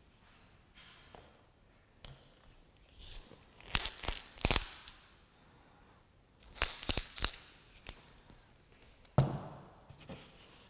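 A hand-twisted salt grinder crunching over wet watercolour paper in two short bursts of sharp clicks, then a single thump near the end.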